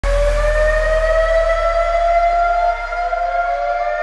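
Siren-like tone with several overtones, held and slowly rising in pitch, with a second tone gliding up to join it about two seconds in, over a deep low hum that fades. It is the opening of the dance track, running on into the music.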